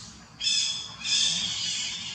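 Infant long-tailed macaque giving two high-pitched squealing cries, a short one about half a second in and a longer one straight after.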